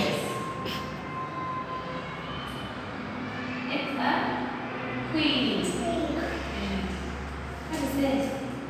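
Soft, brief speech from a woman and a young child, with short pauses between, over a low steady rumble that comes in about halfway through.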